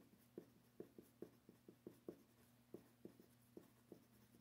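A pen writing on paper, faintly, with short scratchy strokes about three a second as letters are formed.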